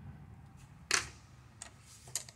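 A sharp metallic click about a second in, followed by a fainter one: a T-handle hex wrench being set down on the steel mill table after the vise is locked.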